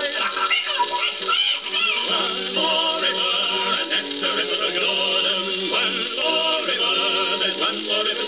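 Music from an old 78 rpm shellac record on a turntable, with a muffled, old-record sound. The band of a novelty song plays between verses, and warbling, wavering bird-like calls sound over it.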